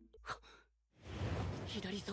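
A breathy sigh, a brief pause, then a long rushing breath that runs into shouted speech from the anime's dialogue near the end.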